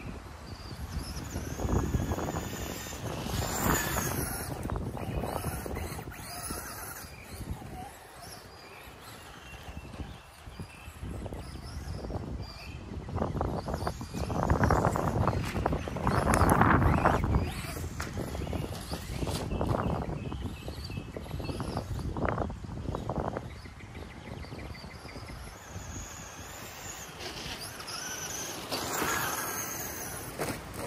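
Wind on the microphone, with the brushed electric motor of a Traxxas Slash RC truck whining up and down in pitch as the truck accelerates and slows around the track.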